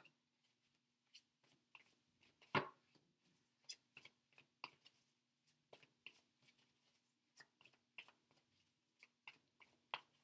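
A deck of cards being shuffled by hand: faint, irregular clicks and taps of cards against each other, with one louder snap about two and a half seconds in, over a faint steady hum.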